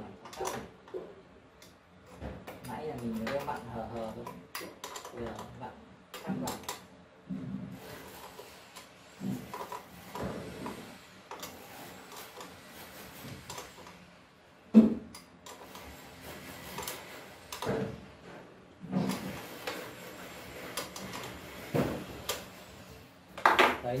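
Aluminium axis carriages of a homemade CNC machine being handled and slid along their linear rails by hand: scattered metal clicks and knocks with stretches of sliding noise. A single sharp knock about 15 seconds in is the loudest.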